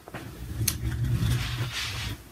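A large piece of cross-stitch fabric rustling as it is unfolded and lifted, with a low rumble of handling noise, a sharp click about two-thirds of a second in and a louder rustle near the end.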